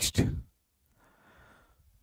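A man's word ends at the start, then about a second in comes a faint breath drawn through the mouth.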